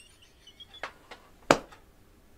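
A woman's stifled, almost silent laughter, with a few faint squeaks near the start. Several small clicks are heard, and one sharp click about three-quarters of the way in.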